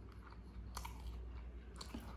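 Close-miked chewing of a mouthful of mandi rice and chicken, with small wet mouth clicks and two sharper crackles, one under a second in and one near the end, over a faint low hum.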